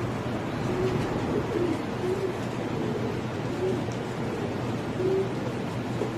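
Domestic pigeons cooing: short, low coos repeating every second or so over a steady background hiss.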